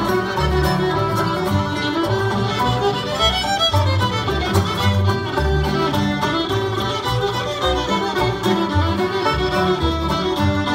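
Live acoustic string band playing an instrumental passage in a bluegrass or country style, a fiddle carrying the lead over strummed guitar and a moving bass line.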